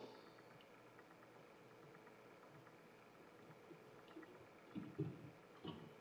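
Near silence: faint room tone, with a few brief, faint low sounds near the end.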